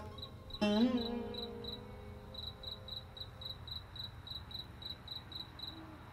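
Crickets chirping steadily, a high, even chirp about three to four times a second. About half a second in, a single plucked string note from the background score starts sharply, rings and fades away.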